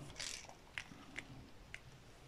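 Faint small clicks, three of them about half a second apart, as square resin diamond-painting drills are picked up and set down with tweezers on the adhesive canvas. A soft rustle comes just before them.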